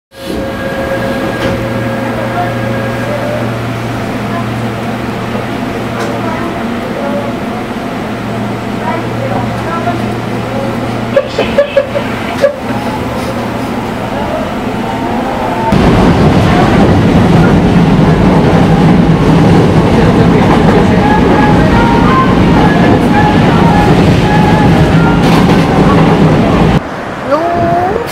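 Subway train running, heard from inside the car: a steady hum with a few sharp knocks, then about 16 s in the noise jumps to a much louder, heavier rumble as the train rolls out onto a steel truss bridge.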